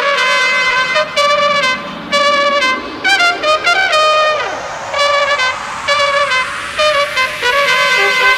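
House music breakdown: a brass riff plays short repeated phrases over a noise sweep that rises steadily in pitch, with no kick drum.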